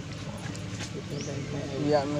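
A person's voice talking in low tones, without clear words, louder toward the end, with a short high rising chirp about a second in and a steady low hum underneath.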